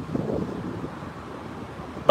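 Wind blowing on a phone's microphone, heard as a steady low rumble.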